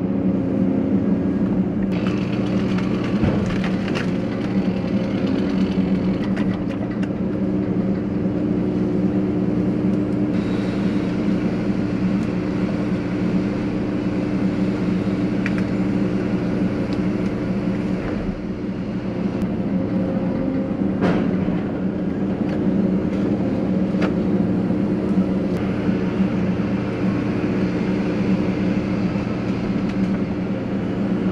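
Liebherr 914 wheeled excavator's diesel engine running steadily, heard from inside the cab while the machine works, with a handful of sharp cracks and clicks scattered through.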